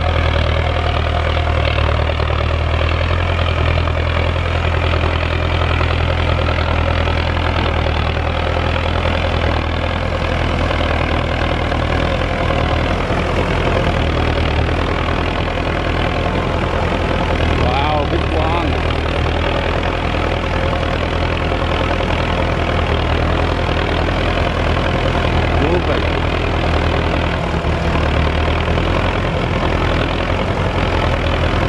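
Belarus 1025 tractor's turbocharged four-cylinder diesel engine running steadily under load while pulling a tillage implement through the soil, a deep unbroken drone.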